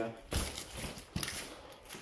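Footsteps scuffing and crunching on a gritty stone rubble floor, with two sharp knocks about a third of a second and a second in.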